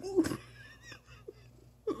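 A cat nuzzling a person's face close to the microphone: one short breathy sound about a quarter second in, then soft snuffling and faint wet clicks of nose and mouth.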